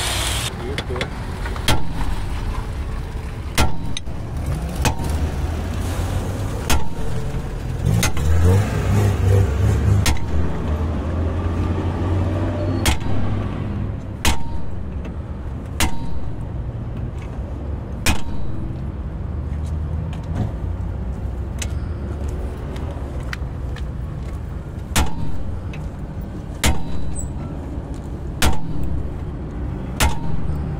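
Hammer blows on a steel punch held against a car's rear hub and stub axle, about twenty sharp metallic knocks at uneven intervals of one to two seconds, over a low engine rumble that is strongest in the middle.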